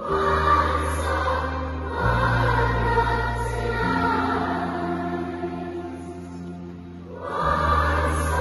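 A massed school choir singing with instrumental accompaniment, the low notes held and changing about every two seconds. The sound thins out near the end, then swells again.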